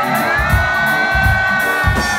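Reggae band playing live, with a long held note over pulsing bass and drums.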